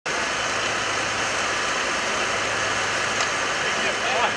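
Steady low engine hum, typical of a fire engine's pump running, under a constant hiss from the hose jets and the burning roof, with one sharp crack about three seconds in.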